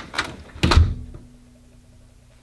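A door swinging shut and closing with a single heavy thud under a second in.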